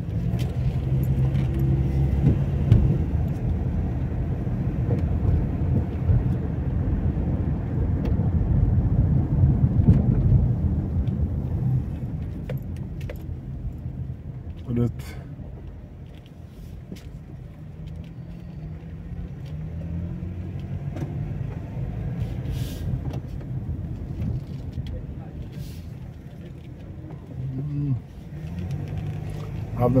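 Car engine and road noise heard from inside the cabin while driving through residential streets. It is a steady low hum, louder for the first dozen seconds and quieter after that, with a few small clicks and rattles.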